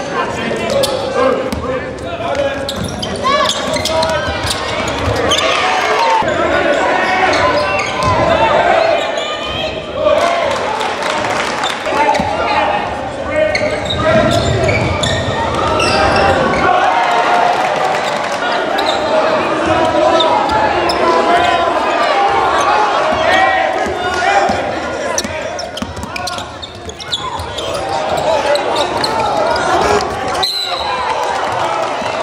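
Basketball being dribbled and bounced on a hardwood gym floor during live play, with players and spectators calling and shouting over it in a gymnasium.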